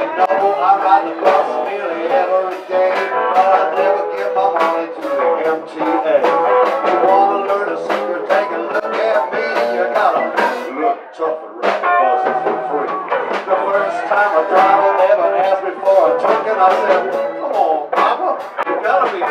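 Live blues band playing, with bass guitar under the music and a man singing into a microphone.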